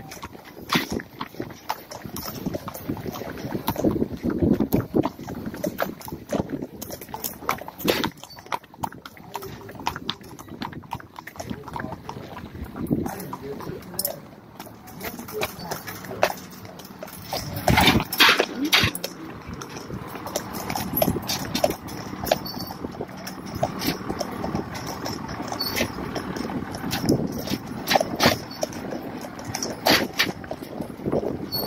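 Horse hooves knocking on a paved street at a walk, an irregular run of sharp clops, louder for a moment about eighteen seconds in.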